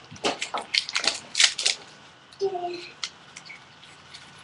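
Foil baseball card pack crinkling and rustling as it is torn open and the cards are pulled out, in several short bursts over the first couple of seconds. About halfway through comes one brief, high, squeak-like voice sound.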